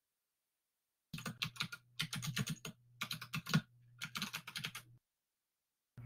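Typing on a computer keyboard, in four quick runs of keystrokes that start about a second in, picked up by a video-call microphone. A low hum comes and goes with the typing.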